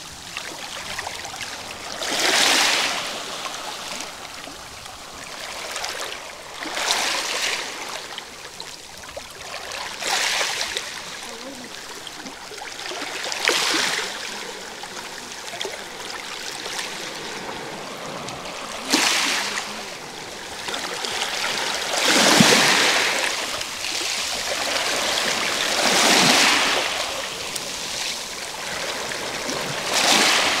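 Small Black Sea waves lapping and washing over a pebble beach and low rocks at the water's edge, a rush of water every few seconds, the strongest about two-thirds of the way through.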